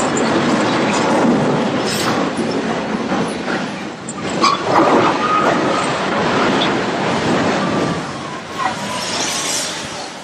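A large mobile crane toppling over: a loud crash about halfway through, followed for a couple of seconds by high screeching of steel, over a steady rush of noise.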